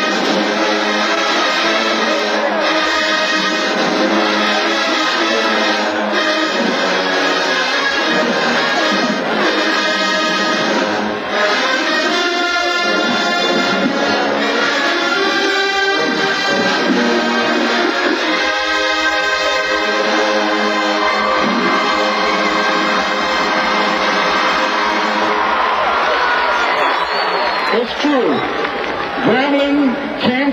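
Marching band brass section, trumpets among them, playing a loud full-band passage, with a long held note in the last several seconds.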